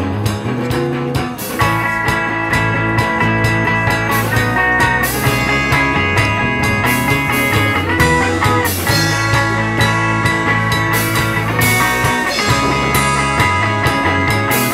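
Instrumental break of a live rock song: electric guitar and electric bass guitar playing over steady percussive hits, with a brighter high guitar line coming in about a second and a half in.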